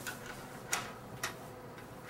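Three light, sharp clicks about half a second apart, over quiet room tone.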